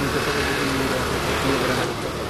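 Steady street noise with a vehicle engine running, and faint voices underneath.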